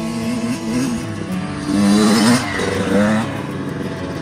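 Kawasaki 85 two-stroke dirt bike engine revving as it is ridden, its pitch rising and falling and loudest about two seconds in.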